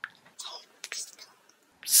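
Faint mouth noises from a man pausing between sentences: a short breathy, whisper-like sound, then a few small lip and tongue clicks.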